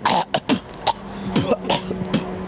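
A man coughing and spluttering in a series of short, sharp bursts, with goose feathers packed around his face and mouth.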